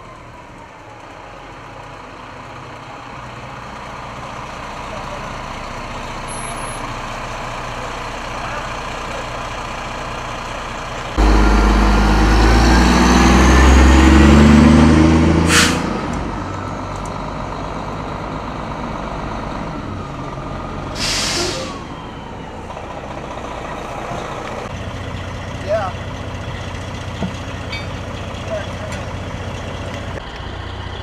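A fire engine's diesel engine running as the truck pulls in, growing louder until it passes close with a heavy rumble. Then comes a short sharp air-brake hiss, and a few seconds later a longer hiss of air.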